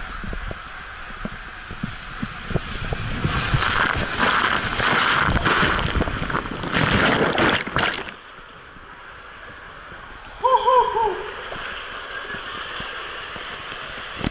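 Rushing water and a body sliding fast down an enclosed water slide tube, with knocks, building into several seconds of loud splashing and spray as the rider hits the shallow braking water of the runout at speed. The splashing stops abruptly about eight seconds in, leaving a lower steady wash of running water, and a short vocal cry comes a couple of seconds later.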